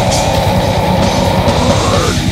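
Heavy metal band playing live: distorted electric guitar over fast, dense drumming, with one long note held steady above them.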